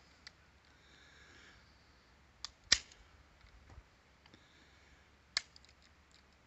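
A few sharp metallic clicks from a .22 LR pistol being worked by hand, the loudest about two and a half seconds in and another near the end, with no shot going off. This is a dud rimfire round: a light primer strike, struck twice and still not firing.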